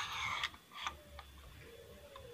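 Nail magazine of a pneumatic F30 brad nailer being worked by hand: a short scraping slide, then two light clicks.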